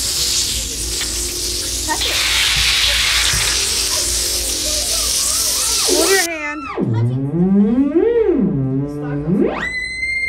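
A steady hiss for about six seconds, then a theremin's electronic tone sliding down low, back up, down again, and climbing to a high held note near the end as a hand moves near its antenna.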